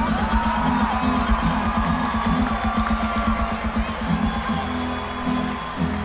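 Live acoustic rock band playing, heard from within the audience, with whoops and cheering from the crowd; the music eases off near the end.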